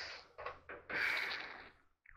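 A man's heavy breathing, made while bent over and straining at work: the end of a long breath, two short quick ones, then another long breath out.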